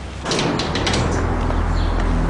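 A heavy metal sliding gate rattling open: a sudden rush of noise with a few sharp clicks about a quarter second in. Low, steady soundtrack tones come in under it near the end.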